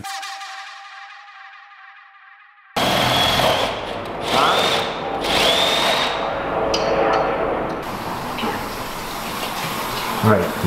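A last musical note fades away. About three seconds in, a power drill starts boring into the wooden roof boards from below, its motor whine rising and falling as it bites through the wood.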